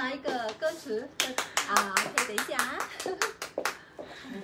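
Hands clapping in a quick, even run of about five claps a second, starting about a second in and lasting a little over two seconds.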